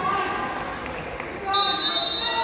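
Coaches and spectators shouting in an echoing gym during a wrestling bout. About a second and a half in, a sharp, steady, high-pitched referee's whistle cuts in and is the loudest sound.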